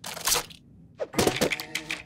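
Cartoon sound effect of a taped-together cardboard toy car cracking and falling apart: a sharp crack at the start, then a clatter of pieces from about a second in.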